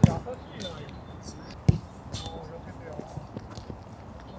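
A football being kicked on an artificial-turf pitch: two sharp thuds, the louder one at the very start and another about a second and a half later.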